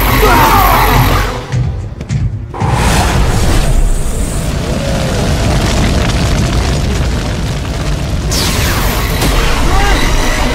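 Cartoon action sound effects: deep booms and energy-blast effects over loud dramatic background music. They drop off briefly about a second and a half in, then come back loud.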